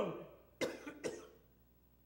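A man coughing twice, short throaty coughs about half a second apart.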